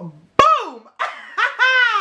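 A woman laughing aloud in two bursts, the second one longer, its pitch falling away at the end.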